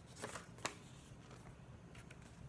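Pages of a hardcover picture book being handled and turned: a faint rustle of paper and a short sharp click about two-thirds of a second in.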